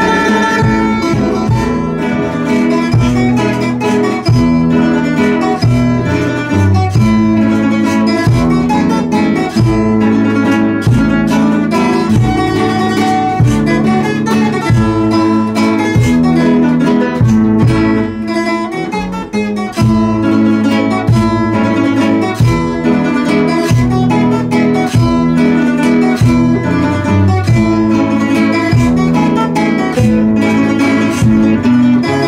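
Nylon-string classical guitars strummed and plucked together in a steady, regular rhythm.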